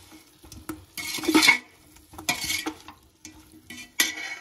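Metal spoon stirring and scraping potato and cauliflower pieces in masala inside an aluminium pressure cooker. Two main scraping strokes come about a second apart, with a few light clicks of the spoon against the pot.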